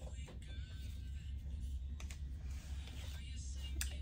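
Faint steady low hum with a few soft clicks.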